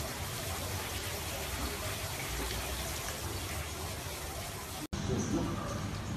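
Bath water running, a steady even wash with no distinct splashes, which breaks off suddenly about five seconds in.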